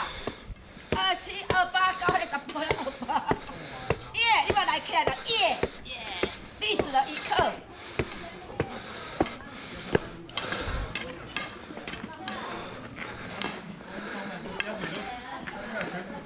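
Several people talking, the voices clearest in the first half, with footsteps on stone steps and paving.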